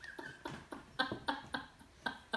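Soft laughter: a run of short breathy chuckles, about three a second, growing a little stronger from about a second in.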